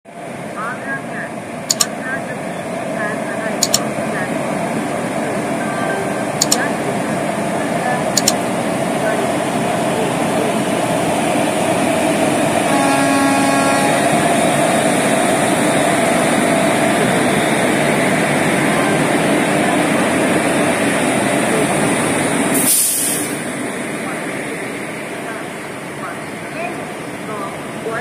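A WAP-4 electric locomotive and its coaches roll slowly past, the rumble of wheels on rails building to its loudest in the middle and easing toward the end. Sharp clicks come every two seconds or so in the first eight seconds, a short horn note sounds just before halfway, and a brief hiss comes near the end.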